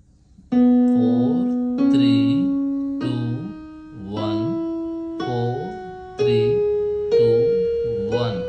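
Yamaha portable keyboard in a piano voice playing a B major scale upward, one note about every second. It climbs from B through C sharp, D sharp, E, F sharp and G sharp to A sharp, each note struck and left to die away.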